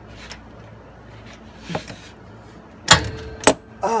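Metal clicks and knocks of a ratchet and socket wrench working on a car's oil pan drain bolt: a few faint ticks, then two loud sharp metallic knocks about half a second apart near the end.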